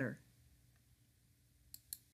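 Quiet room tone with a faint steady hum, then two sharp clicks about a fifth of a second apart near the end.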